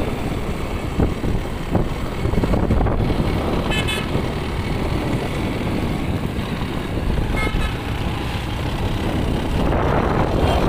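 Wind rush and engine rumble from a motorcycle on the move, with two short horn toots, the first about four seconds in and the second about three seconds later.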